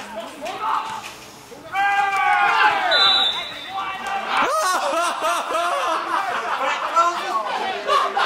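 Indistinct men's voices calling and talking, with a quieter moment early on, then louder shouting. One short, high, steady tone sounds about three seconds in.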